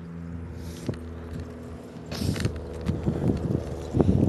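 A car engine running steadily, a low hum with a fixed pitch. From about two seconds in, footsteps and rubbing on the phone's microphone join it.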